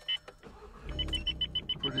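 A short double beep, then about a second in the MK7 Golf GTI's turbocharged four-cylinder engine starts and settles into a low idle while the car's warning chime beeps rapidly, about six times a second.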